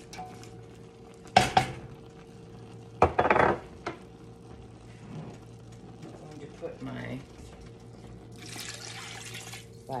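A utensil stirring and knocking against a stainless steel stockpot of browned venison, onion and garlic, with two loud clanks about a second and a half and three seconds in. Near the end, water is poured into the pot in a steady hiss.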